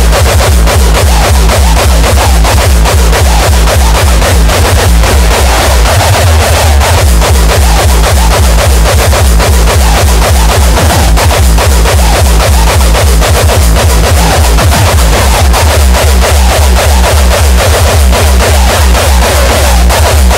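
Loud industrial hardcore electronic music from a DJ mix: a fast, steady kick drum under a dense, harsh synth layer, with no vocals.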